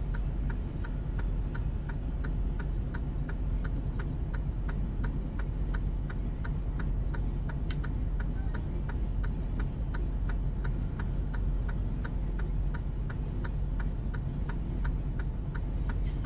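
Steady mechanical ticking in a semi-truck cab, about three even ticks a second, over a low steady hum, with one sharper click about halfway through.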